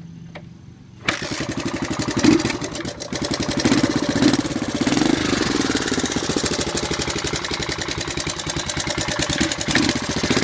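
1985 Honda ATC 250SX three-wheeler's single-cylinder engine kick-started, catching suddenly about a second in, then running with a couple of revving blips early on and settling to a steady, fast idle.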